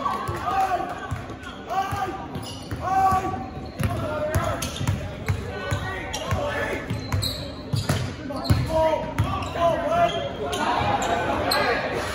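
Basketball dribbled on a hardwood gym floor, with repeated bounces, under the shouts and calls of players, coaches and spectators.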